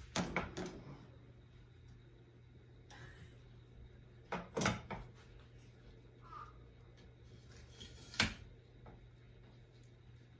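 Telescoping ring-light stand being handled and extended: short clacks and knocks from the pole sections and fittings, a cluster near the start, another about four and a half seconds in, and a single sharp one about eight seconds in.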